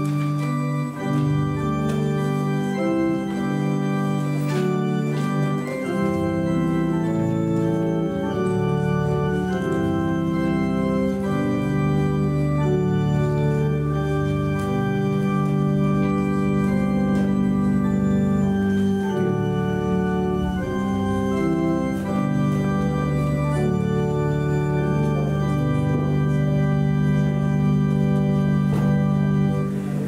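Organ music playing slow, sustained chords during the offertory, fading out at the very end.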